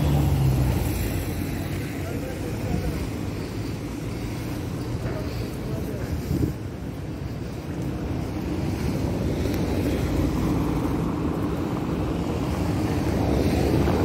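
Street ambience: a steady low rumble of traffic, with passers-by talking and some wind on the microphone.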